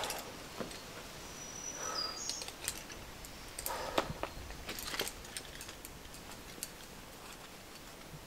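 Faint scattered clicks and clinks of carabiners and quickdraws on a climber's harness as he moves up the rock face, most around four and five seconds in, with a short high bird call about two seconds in over quiet outdoor hiss.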